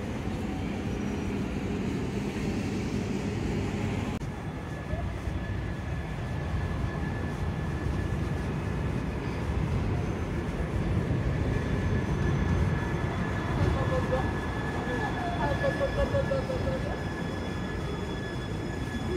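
Busy city-street ambience with a tram running nearby: a steady low rumble of traffic, and from about four seconds in a steady high whine from the tram's electric drive that holds until near the end.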